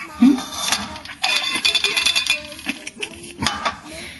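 Kitchen clatter: a pan and other objects knocking and rattling, with a few sharp knocks and about a second of dense rattling in the middle.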